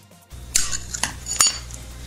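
Pieces of glass clinking and clattering as stained glass is handled. There are a few sharp clinks starting about half a second in, and the last one rings briefly.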